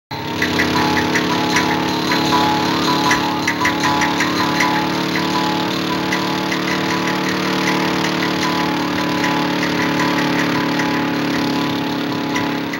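Motorcycle engine running at a steady speed as the bike rides along, starting abruptly.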